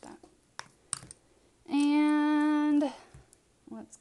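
A woman's voice holding one steady sung or hummed note for about a second, dropping in pitch as it ends, with a few light clicks before it.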